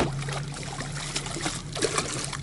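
Water splashing and trickling against the side of a small boat as a hooked fish thrashes at the surface, over a low steady hum.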